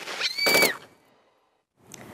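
Closing sound effect of a TV segment's title sting: a short high pitched tone with a noisy burst about half a second in, ending the intro music. It cuts to dead silence, then faint studio room tone near the end.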